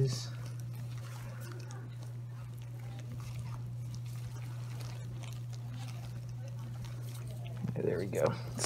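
A steady low hum with faint, soft handling noises over it; no distinct event stands out.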